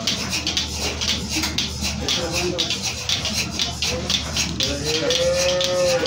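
Bucket milking machine running: a steady low hum with a fast, even, rhythmic hissing pulse. A held voice-like note sounds near the end.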